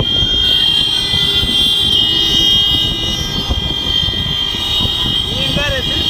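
Wind and road noise recorded from a moving vehicle in traffic, with a steady high-pitched tone running throughout. A voice starts near the end.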